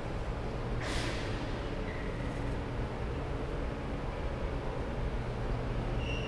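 Steady low room hum with a brief hissing swish about a second in.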